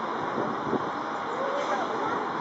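Boeing 737-900ER's CFM56-7B jet engines heard as a steady rushing noise as the airliner comes in on final approach with its gear down, with faint voices underneath.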